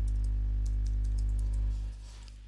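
A password being typed on a computer keyboard: a run of light key clicks over a loud, steady, low electrical hum that drops away near the end.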